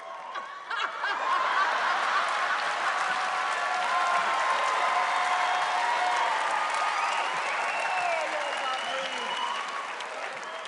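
A large audience applauding and laughing. It builds about a second in and then holds steady.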